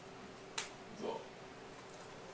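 A single sharp computer-keyboard key click about half a second in, the key press that runs a typed terminal command, followed a moment later by a short, fainter low sound.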